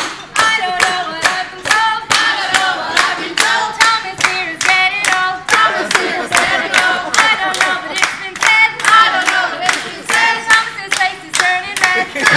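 A group of restaurant servers singing a birthday song together while clapping in a steady rhythm, a little under three claps a second.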